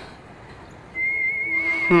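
Film music: after a quiet first second, a high held note with a slight waver comes in, like a whistle. A falling pitched sound begins right at the end.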